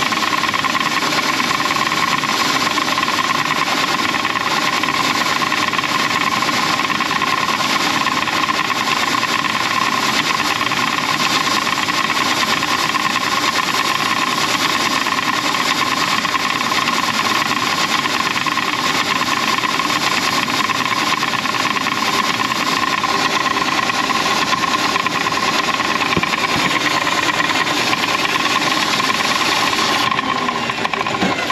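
A drain-cleaning machine runs steadily with an even motor hum and a constant whine. It is clearing a grease clog from a sink drain line.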